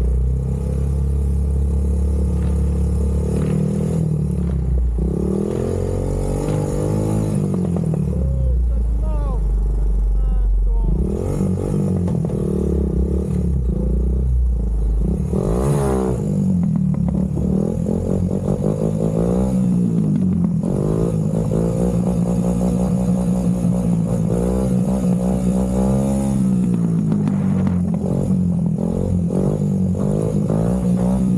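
Honda sport ATV engine running and revving as it is ridden, its pitch rising and falling again and again, with a low rumble through the first half.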